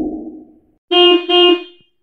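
A vehicle horn sound effect giving two short honks, beep-beep, about a second in. Before it, a low rumble fades out over the first half second or so.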